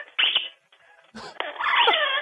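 A pet parrot calling over a phone line: a short call near the start, then after a brief pause a longer wavering call.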